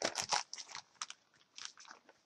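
Clear plastic packaging bag crinkling in short, irregular crackles as it is handled.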